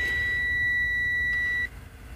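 Truck dashboard warning buzzer giving one steady high beep that cuts off most of the way through. It is the instrument cluster's key-on self-test: the warning lights are lit and the gauges are sweeping, with the engine not running.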